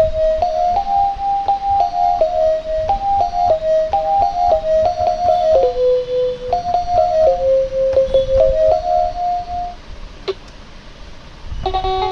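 Gooyo GY-430A1 toy electronic keyboard played one note at a time, a simple melody in a thin, pure tone, with a small click as each key goes down. The melody stops a little before ten seconds in; after a sharp click, a brighter, fuller sound with several notes together starts near the end.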